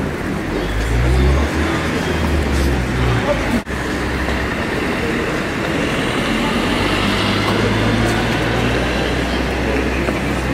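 City street traffic with a motor vehicle engine running close by, its low hum coming and going, under a crowd's voices.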